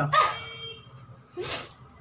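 A short thin whine, then a sharp hissing breath about a second and a half in: a person reacting to the burn of hot chili peppers.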